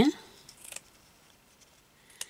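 Scissors snipping through lace stuck on double-sided carpet tape: one brief, faint cut a little over half a second in.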